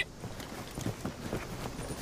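Soldiers' boots shuffling and scuffing on gravelly ground as a squad dresses its line after a 'dress right' command: a scatter of faint, irregular footstep scrapes.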